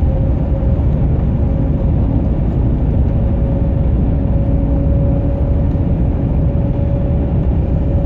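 Heavy truck's diesel engine and road noise heard inside the cab while cruising on a highway: a steady low rumble with a steady whine running through it.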